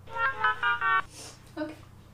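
A short electronic jingle of about five quick rising and falling notes, cut off suddenly after about a second, followed by a spoken "ok".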